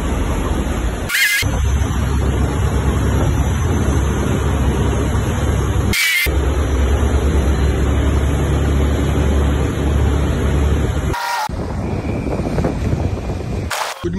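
Pilot boat's engine running steadily beside a ship's hull, with a low rumble and a rushing noise over it. The sound breaks off briefly four times, with short high tones at the first two breaks.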